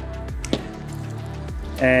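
Background music with steady low sustained notes, broken by a single short click about half a second in. A man's voice comes in near the end.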